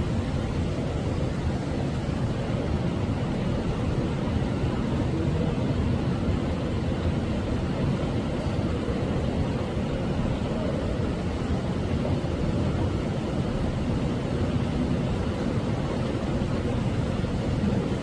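Steady low rumbling noise with no distinct events, even in level throughout.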